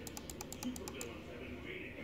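Rapid key clicks of a laptop keyboard being typed on, stopping about a second in, over faint indistinct voices.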